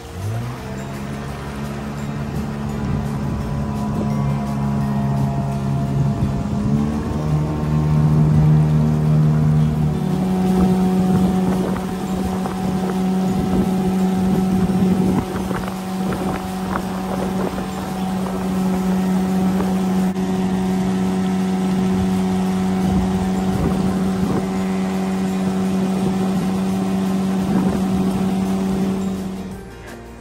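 Small outboard motor pushing a canoe, running steadily. Its pitch rises right at the start, shifts twice, around seven and ten seconds in, then holds steady until it cuts off near the end.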